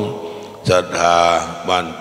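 A Thai Buddhist monk's voice chanting a sermon in melodic, sung recitation. After a brief pause he holds one long, steady note.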